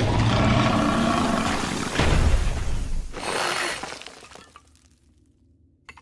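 Cartoon sound effects of a giant worm monster roaring, mixed with crashing and breaking. A second loud burst comes about two seconds in, then the sound dies away to near silence near the end.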